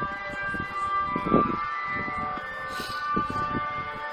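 Ice cream van chime playing its tune through the van's loudspeaker: a run of steady, held electronic notes over a low background rumble.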